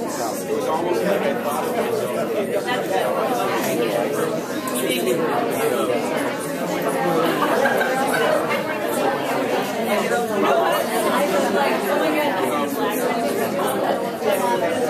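Many people talking at once: overlapping conversations with no single voice standing out.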